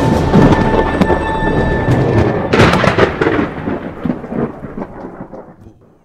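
Thunder: a sharp crack followed by a rumble, with a second loud crack about two and a half seconds in, then fading out over the last couple of seconds.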